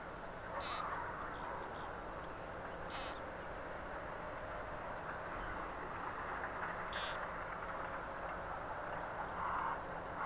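Outdoor wetland ambience: a steady background chorus of calling animals, with a short, high bird call repeated three times about every three to four seconds, and lower calls near the end.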